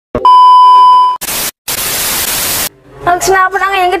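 TV test-pattern transition effect: a loud, steady, high-pitched test-tone beep for about a second, then two bursts of television static hiss. A woman starts speaking near the end.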